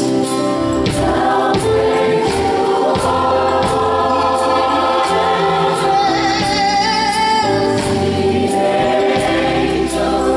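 Gospel choir singing in full harmony over a live band, with drums keeping a steady beat and a soloist's voice on microphone.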